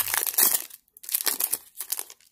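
Foil wrapper of a trading-card pack crinkling and tearing as it is opened, in three short spells of crackling.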